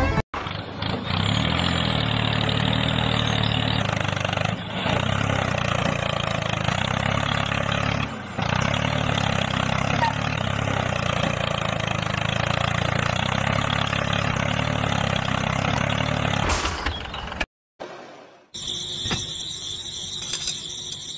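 Tractor-style engine running steadily with a low, even pulse and two brief dips, cutting off sharply near the end. After a short silence, a quieter sound with a high steady whine.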